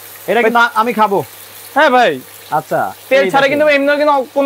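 A whole fish frying in oil in a nonstick pan on an electric cooktop, a faint steady sizzle under a person's voice, which comes in short phrases and is the loudest sound.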